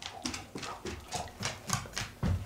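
Dog's claws tapping on a hard floor as a dog walks: a quick, irregular run of light taps, several a second.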